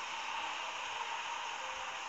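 Steady, even hiss of light rain under an umbrella, with no separate drops standing out.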